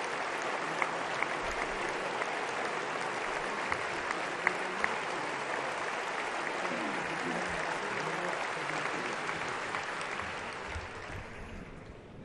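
A large assembly applauding steadily, with a few sharper claps standing out in the first half. The applause dies away over the last two seconds.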